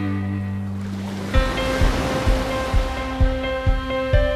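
Background music: a held chord fades, then about a second in a new section begins with a low, steady beat about twice a second under sustained tones. The wash of breaking surf runs beneath the music.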